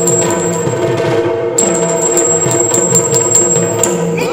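Yakshagana talamaddale accompaniment without singing: the maddale barrel drum plays a rhythmic pattern while small hand cymbals ring on a fast, even beat over a steady drone. The cymbals pause briefly just past a second in, then go on.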